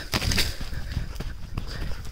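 Quick footsteps on sandy ground with leaves brushing past, a run of irregular soft thuds and rustling.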